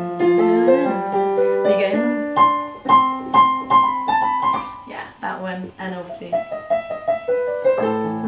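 Piano being played as a warm-up: sustained chords with a repeated higher note struck about twice a second through the middle.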